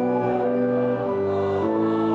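Organ playing a hymn tune in held chords that change every half second or so.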